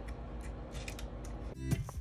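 Faint light clicks of a craft knife blade cutting small pieces off a strip of polymer clay against the work surface. Music starts near the end.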